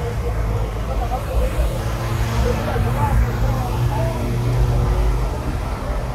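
Low, steady rumble of a motor vehicle engine running nearby, louder through the middle seconds, with indistinct voices in the background.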